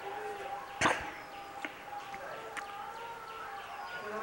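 Quiet background with a faint steady tone and faint voices, broken by one sharp click just under a second in and two lighter ticks later.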